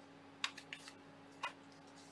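A few light clicks and taps from small objects being handled on a tabletop: about five short ticks in the first second and a half, then quiet.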